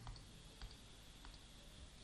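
Near silence: room tone with a few faint clicks from the writing input on a digital whiteboard as handwriting is entered.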